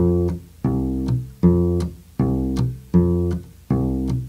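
Electric bass guitar plucked fingerstyle in a simple country root-and-fifth bass line: about six evenly spaced notes, alternating between two pitches, with the low F on the first fret of the E string.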